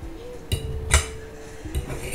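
Fork clinking and scraping against a plate with close-miked eating, a few sharp clicks, the loudest about a second in.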